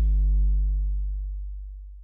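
Distorted sine-wave sub bass from the Serum synthesizer: one low, steady note with a few overtones. From about half a second in it fades out slowly on its lengthened release.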